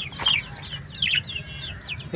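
Budgerigars chattering: a run of short, quick chirps that rise and fall in pitch.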